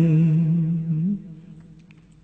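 A Buddhist monk's voice chanting a Khmer lament, holding one long low note that lifts slightly and then breaks off a little over a second in.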